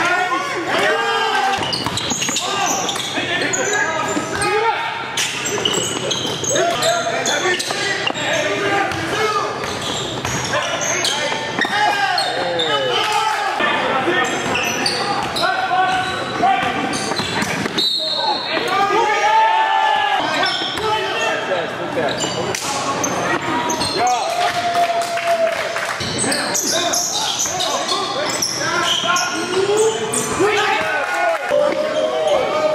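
Live sound of a basketball game in a large gym: the ball bouncing on the hardwood court, with players' voices and shouts. The hall makes it all echo.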